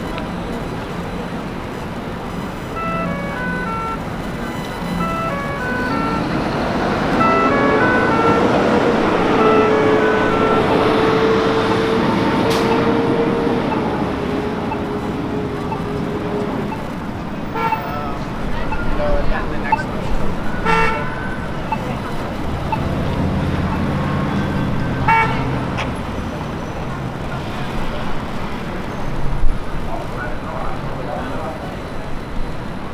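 Busy downtown intersection ambience: road traffic and the voices of people passing. Early on there is a run of short high notes like a little tune. In the middle a single horn-like tone rises and then holds for several seconds, while the traffic swells. Later there are scattered clicks and knocks over a low rumble.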